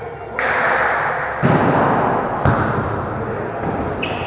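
Two sharp thuds about a second apart as a volleyball is struck and hits during a rally, the second one louder and deeper. Players' voices fill the echoing gym hall throughout.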